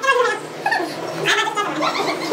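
Several short, high-pitched vocal exclamations and laughs from the people gathered around the cake, rising and falling in pitch.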